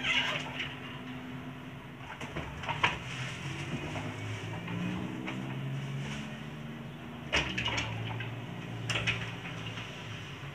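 Scattered knocks and rustles of things being handled close by, the sharpest about three seconds in and two more near the end, over a low steady hum.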